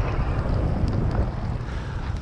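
Wind buffeting the microphone in a gusty, uneven rumble, over the rush and splash of water along a sailing kayak's hull as it moves at speed.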